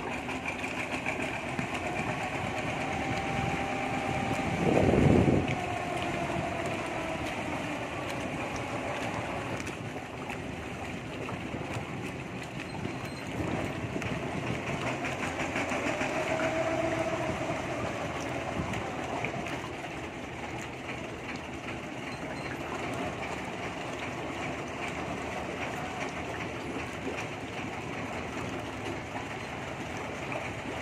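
Engine of a small wooden bot penambang water taxi running, with faint pitch changes that rise and fall twice, over a steady wash of river and wind noise. A louder low sound lasting about a second comes about five seconds in.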